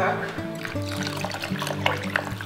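Water pouring from a glass measuring cup into a wide pot of rice and onions, over background music with steady held notes.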